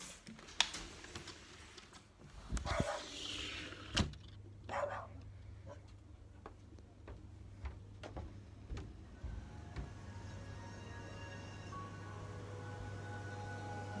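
A door being handled, with a few sharp knocks and rustling steps. Then a steady low hum sets in, with faint music in the background from about halfway through.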